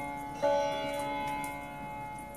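Sitar meditation music: a single sitar note is plucked about half a second in and rings on, slowly fading.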